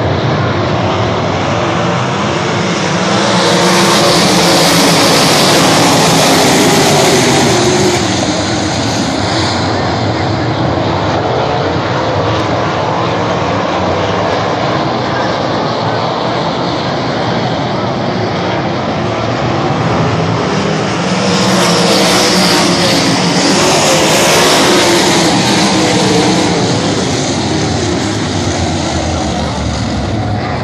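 A field of winged dirt-track sprint cars racing around the oval. Their engines run as a continuous loud drone that swells twice as the pack passes close by, the two swells roughly 18 seconds apart.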